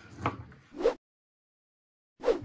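A couple of short, wordless sounds from a man's voice in the first second, then about a second of complete silence where the audio cuts out.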